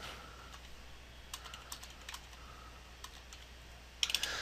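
Faint computer-keyboard keystrokes, an irregular scatter of short clicks, as digits are typed into a date field.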